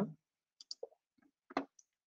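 A few faint, short clicks: three small ones in the first second and a slightly stronger one about halfway through.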